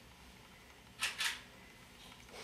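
Single-lens reflex camera shutter firing: two quick, sharp clicks close together about a second in, over faint room tone.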